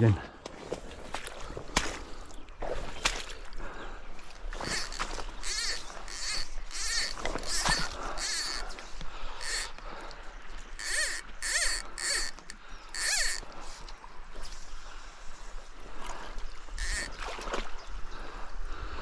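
Footsteps squelching and swishing through wet, boggy grass and mud, a run of strides roughly half a second apart through the middle and one more near the end.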